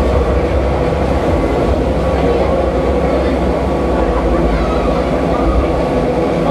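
Bakker Polyp fairground ride running at speed: a loud, steady mechanical rumble from its drive and swinging gondolas.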